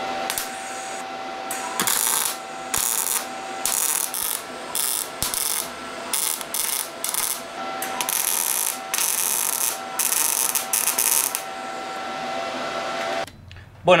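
MIG welder tacking a steel exhaust tube onto a manifold flange: a run of about a dozen short, crackling weld bursts over a steady sizzle and a faint hum, stopping shortly before the end.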